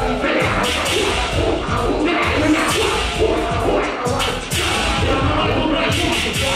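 Loud dance music with a steady heavy beat, with the crowd's noise beneath it.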